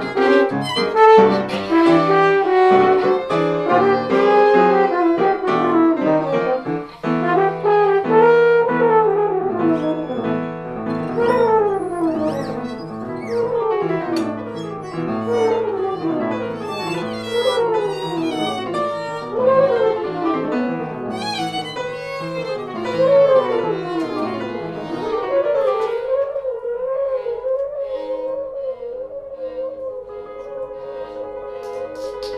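A live jazz trio of French horn, violin and piano playing together, busy lines weaving around one another. Near the end the low notes drop away, leaving a wavering mid-range line over lighter higher parts.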